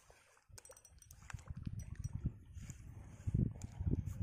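Spinning reel being cranked while playing a hooked snakehead: a low rumble of handling noise with many fast small clicks, starting about half a second in and growing louder near the end.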